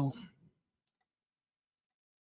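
A man's spoken word trailing off, then near silence with one faint computer mouse click about a second in.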